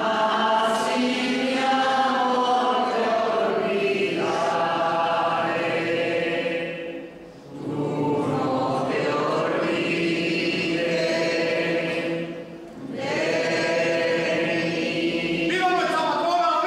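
A group of voices singing a hymn together without instruments, in long held notes. The singing comes in three phrases, with short breaks about seven and twelve seconds in.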